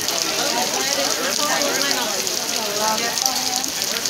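Heavy downpour: a steady, dense hiss of rain, with people talking in the background.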